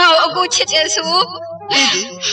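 A singer's voice in a Burmese song, the melody line bending and wavering in pitch, over steady held accompaniment tones and a low bass.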